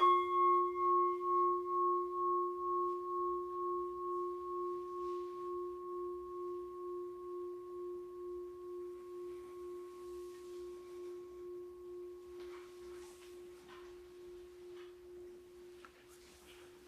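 A bell struck once, ringing with one steady deep tone and fainter higher overtones, its loudness pulsing in a slow waver as it fades gradually. It marks the elevation of the chalice at the consecration.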